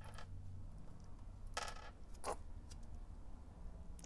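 Small metal cleat bolts and parts being handled and set down on a wooden bench: a short rustle and a sharp click around the middle, otherwise quiet handling.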